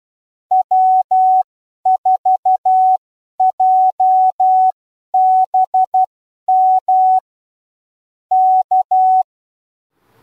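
Morse code sent as a steady tone of about 750 Hz, keying the amateur radio callsign W4JBM (.-- ....- .--- -... --) and then K (-.-), the "go ahead" prosign.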